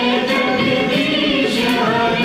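A song with a group of voices singing over instrumental backing.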